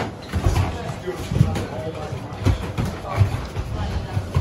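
Muay Thai sparring: gloved punches and kicks landing as dull thuds on gloves, bodies and shin guards, about six at uneven intervals, with bare feet shuffling on foam mats and faint voices of onlookers.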